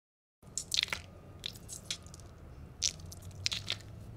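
Crackling, crunchy handling noise with a few sharper clicks over a low hum, as a hand grips and squeezes a mesh squishy stress ball.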